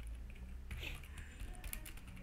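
Computer keyboard being typed on: several faint key clicks, most of them in the second half, over a low steady hum.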